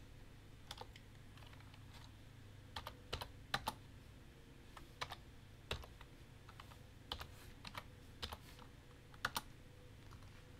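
Computer keyboard keystrokes: a dozen or so sharp key clicks at irregular intervals, some in quick pairs and threes, over a faint steady background hum.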